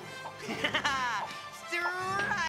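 Cartoon film soundtrack: background music with short cartoon voice cries that fall in pitch, about half a second in and again near the end.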